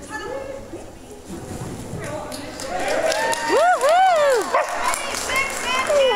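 A high-pitched, excited voice calling out in rising and falling glides, loudest around the middle, with quieter voices around it.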